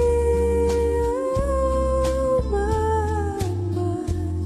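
A woman singing long held notes into a microphone over a backing accompaniment with a steady bass line; her note steps up slightly about a second in and moves down a little past the middle.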